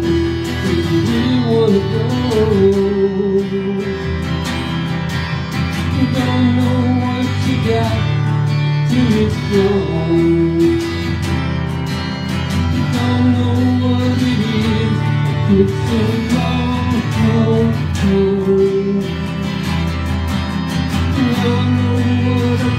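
Acoustic guitars playing an instrumental break of a rock ballad: strummed chords with a picked melody line moving over them.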